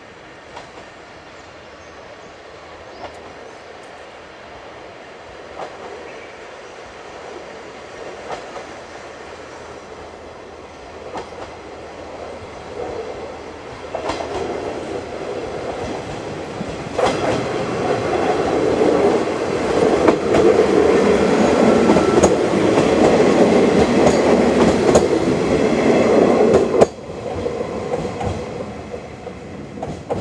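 JR KiHa 40 series diesel railcar approaching and passing close by: its diesel engine and wheels grow steadily louder, with wheel clicks over the rail joints. The sound peaks in the last third, drops off suddenly as the train goes past, and fades with a few receding clicks.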